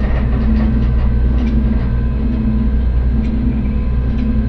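Steady, loud low mechanical rumble with a constant hum: a sound effect of a heavy steel bank-vault door grinding open.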